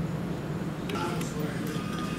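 Pub room tone: a steady low hum with faint chatter of other voices in the background.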